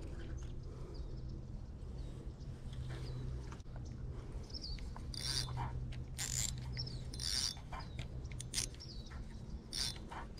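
Spinning reel ratcheting in about five short bursts, roughly a second apart, as line is pulled from it by hand.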